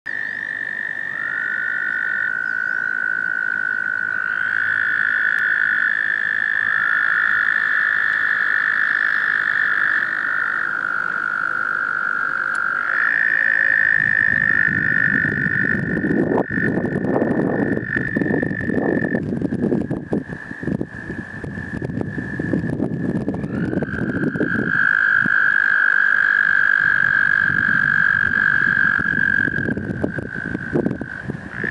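Several American toads trilling: long, steady, musical trills at slightly different pitches that overlap and take turns, each held for several seconds. From about halfway through, a low rumble of noise on the microphone runs underneath.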